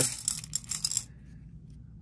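Czech glass beads poured into a plastic bead tray, a quick clicking rattle of glass on plastic and glass on glass that lasts about a second and then stops.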